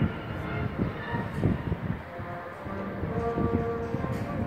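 Gusty wind rumbling and buffeting on the microphone, with faint sustained tones held underneath.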